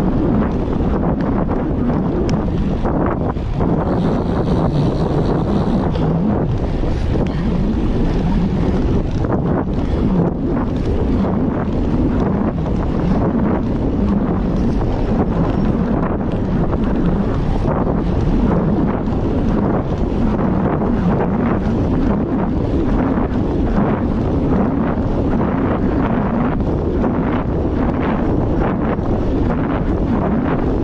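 Loud, steady wind rushing over the microphone of a camera mounted on a moving bicycle.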